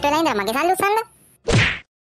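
A single sharp cartoon whack sound effect about one and a half seconds in. It comes after a wavering, pitched wail from a voice during the first second.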